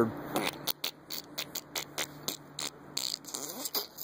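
A man making a string of short, irregular spluttering and clicking mouth noises, imitating the squirting sound of a dog with diarrhoea in its cage.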